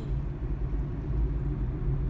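Steady low rumble of a car driving along a road, engine and tyre noise heard from inside the cabin.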